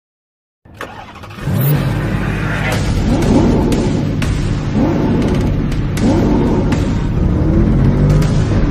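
Car engine revving as a sound effect, starting about two-thirds of a second in; it climbs in pitch again and again, about every second and a half, as if running up through the gears.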